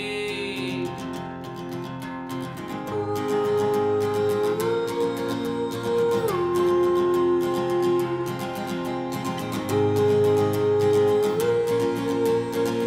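Acoustic guitar strummed in a steady rhythm, its chords changing every couple of seconds.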